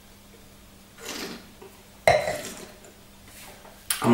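A sip of red wine slurped in with air from a stemmed wine glass, a brief hissing draw about a second in. About two seconds in comes a sudden, louder sound that fades over a second, and a short click comes just before the end.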